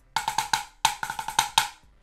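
Wooden drumsticks striking a drum practice pad in a quick sticking pattern: two runs of fast strokes with a short break between them. This is the pattern that stands for the letter L in the BYOS drumming alphabet.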